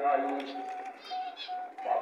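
Ringneck dove cooing: a few short, steady-pitched notes in a row.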